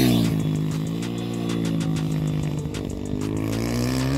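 Mini road-racing motorcycle running on track. Its engine pitch drops in the first half-second as it comes off the throttle, holds low, then rises again near the end as it accelerates.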